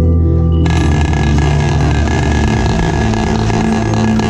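Marching snare drum played with sticks in a sustained roll that comes in suddenly about half a second in and holds steady, over music with mallet percussion and low sustained pitched tones.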